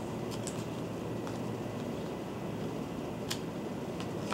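A few faint snips of Westcott scissors cutting heavy glossy paper, the sharpest about three seconds in, over a steady room hiss.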